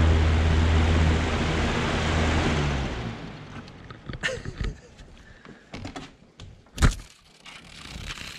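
Box fan running with a steady hum and rush of air, then winding down and fading out about three seconds in after being switched off. A few sharp knocks follow, the loudest near the end, as the fan is handled and lifted out of the window.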